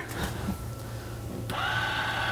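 Motor of an electric windshield sun visor starting about 1.5 s in: a steady, even whine as the powered visor runs. A low steady hum sits underneath.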